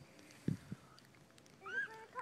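A couple of short low thumps about half a second in, then near the end a child's brief high-pitched cry that rises and falls.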